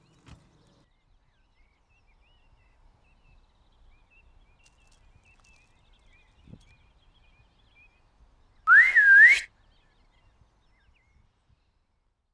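A single short whistled call, under a second long, rising, dipping, then rising again, with a rush of breath noise. It is the loudest sound in a near-silent outdoor stretch.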